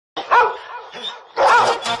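A dog barking twice, two drawn-out barks about a second apart.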